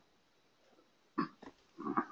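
A quiet pause broken by a person's brief, faint vocal noises: two short sounds a little over a second in, then a low murmur near the end as someone starts to speak.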